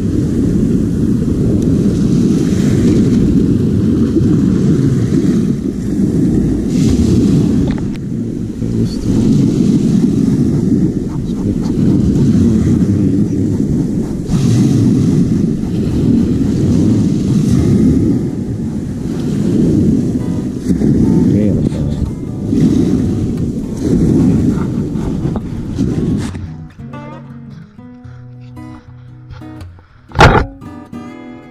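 Surf washing onto a pebble shore, with heavy wind rumble on the microphone that swells and eases every couple of seconds. About 26 s in this gives way to quieter acoustic guitar music.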